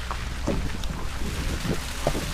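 Wind rushing over an action camera's microphone held out of a moving car's window, over the steady low rumble of the car driving along a dirt road.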